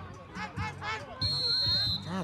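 Voices shouting, then a little over a second in a single steady, shrill whistle blast from a referee's whistle, lasting under a second and stopping sharply; the whistle is the loudest sound.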